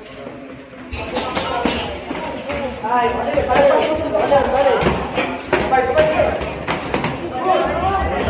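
Loud voices shouting and calling out around a boxing ring, with scattered thuds of gloved punches landing during an amateur bout.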